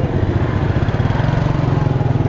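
Small motorcycle engine running steadily with a rapid, even firing beat.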